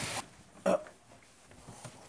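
Water spray from a handheld sink sprayer hissing onto a wet puppy, cut off suddenly about a fifth of a second in; then quiet apart from one short spoken word.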